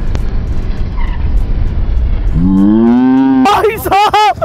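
Wind and riding noise on a moving Yamaha sport motorcycle, a steady low rumble. About two and a half seconds in, a drawn-out call rises in pitch and then holds for about a second.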